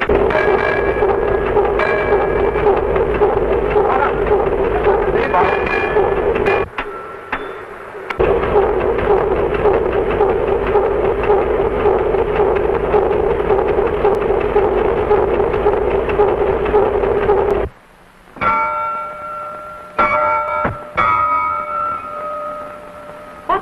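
A loud, steady, rough din that breaks off for about a second and a half around seven seconds in and cuts off abruptly near the end. Quieter sounds with a few held tones follow it.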